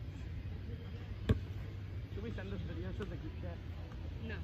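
A single sharp thump about a second in, standing out loudly over a steady low rumble, followed by faint distant voices.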